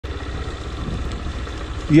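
A 160 cc motorcycle engine running steadily under way, with a low pulsing rumble and wind and tyre noise on a dirt road.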